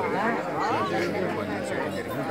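Speech with chatter from the men gathered around.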